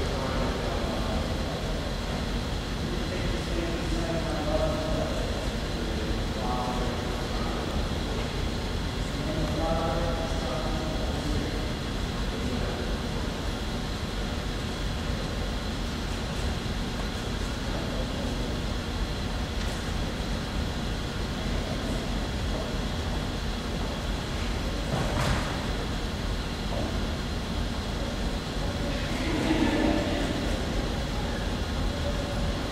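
Steady low rumble and hiss with a thin, faint high whine running through it. Faint, distant voices come through it in the first dozen seconds, and two brief louder sounds break in near the end.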